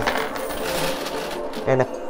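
Steady jingling clatter of many quarters clinking and sliding against each other inside a coin pusher machine.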